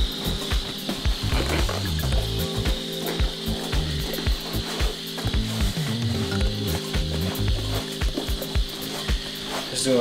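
Background music with a shifting low bass line, under faint rubbing of a microfiber cloth wiping down a wet leather sneaker.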